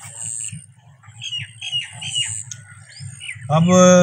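A bird calling outdoors: a quick run of about five short, rising chirps in a little over a second, followed by a couple of higher notes.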